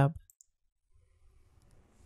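A few faint computer mouse clicks over near silence.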